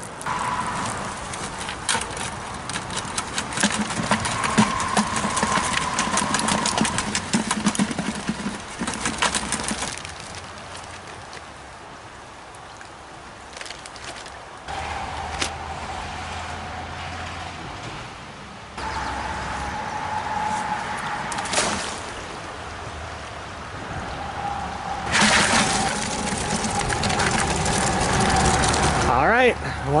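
Wire-mesh crayfish trap being handled, with rapid rattling and clicking through the first ten seconds. After that come quieter, steadier stretches with a faint steady tone and low hum.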